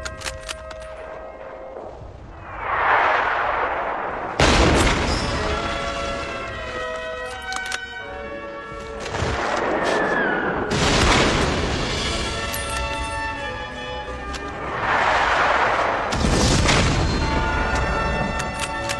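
Orchestral film score with battle sound effects: two sudden loud booms, about a quarter of the way in and again past the middle, with rushing swells of noise between them.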